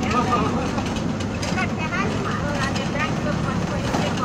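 Steady engine and road noise of a bus on the move, heard from inside its passenger cabin, with faint chatter from passengers.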